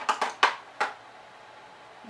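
A few sharp clicks and clacks of makeup products being handled and sorted through by hand, about four in the first second, then quiet.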